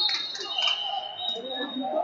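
Gymnasium ambience of scattered background voices, with several short high-pitched squeaks in the first second.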